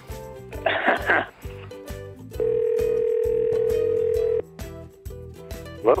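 Background music, over which a single steady telephone tone sounds for about two seconds in the middle: the tone of an outgoing call on a phone's loudspeaker before it is answered.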